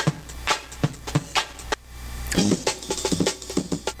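Lo-fi drum loop played back from an ISD1760 sample-player chip in loop mode, a run of uneven drum hits with a short pitched stretch past the middle. A steady low electrical hum from the synth rig runs underneath.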